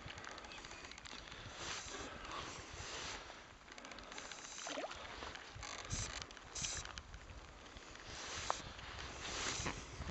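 Kayak paddle strokes splashing in lake water, a short wash of splash every second or so, over a low rumble of wind on the microphone.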